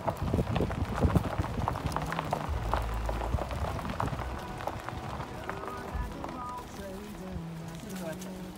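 Footsteps crunching through dry fallen leaves, a few steps a second, thinning out about halfway through. A voice can be heard faintly in the background near the end.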